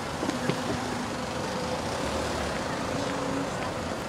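City street traffic noise: a steady wash of passing cars, with brief indistinct voices.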